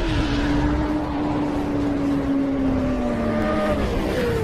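Motorcycle engine sound effect from an animated intro, running at a steady high pitch that slowly sinks and drops further near the end, over a rushing, fiery noise.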